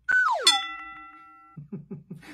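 Cartoon comedy sound effect: a pitched tone sliding quickly downward, then a bright bell-like ding that rings out and fades over about a second.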